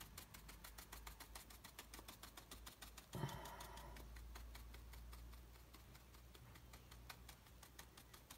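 Faint, rapid tapping of a spiky bristle brush dabbing paint onto watercolour paper, about six taps a second, with a short brushing scrub about three seconds in.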